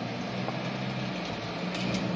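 Street traffic: car engines running with a steady low hum as vehicles cross the road.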